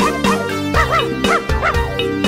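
Bouncy children's-song backing music with a dog barking over it, several short barks in the second half.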